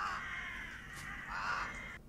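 Crows cawing, with a second swell of cawing about a second and a half in.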